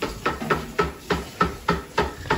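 Footsteps walking quickly across a tile floor: short, even knocks about three or four a second.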